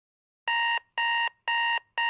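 Electronic alarm beeping: a high-pitched beep repeating evenly about twice a second, three times.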